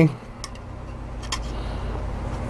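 A low steady hum, with two faint clicks of a metal file's edge against the rim of a metal cat food can as it presses carbon felt down into the stove.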